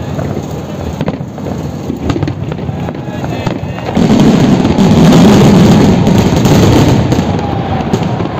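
Fireworks exploding: scattered pops and crackles, then about halfway through a dense barrage of bursts sets in and stays loud.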